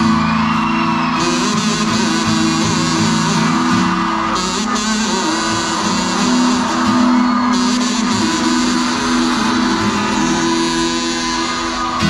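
A live band plays loud amplified music through the stage PA, with strummed guitars over steady held chords.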